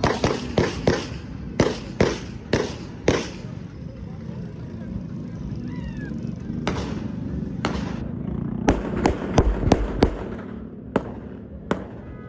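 A string of sharp bangs at irregular intervals, each with a short echo. Several come in the first three seconds, then after a pause of about three seconds a faster run of bangs comes near the end.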